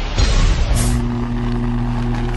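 Sound effects for an animated logo intro: a loud rushing noise. About three-quarters of a second in, a short sharp hiss comes in, and a steady low hum holds from there on.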